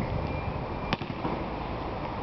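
A basketball smacks once, sharply, about a second in, over steady outdoor background noise.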